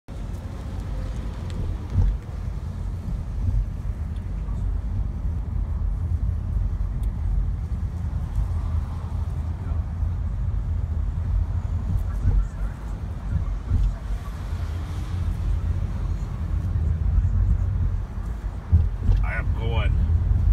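Low, steady rumble of a car driving slowly, heard from inside the cabin, with a few short louder knocks. A voice starts just before the end.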